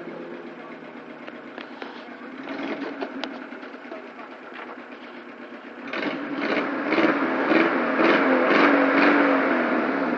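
A 1.0-litre Vauxhall Nova's engine running as the car laps the track. The engine is faint and distant at first, then grows much louder about six seconds in as the car comes down the straight toward the microphone.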